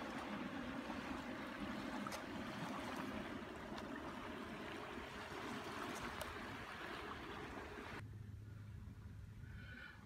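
Steady wash of small waves on a lake beach, with the faint drone of a distant motorboat underneath. About eight seconds in the sound drops abruptly to a quieter low hum.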